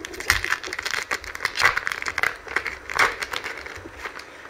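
Foil wrapper of a Japanese Pokémon booster pack crinkling in irregular crackles as it is handled and opened by hand.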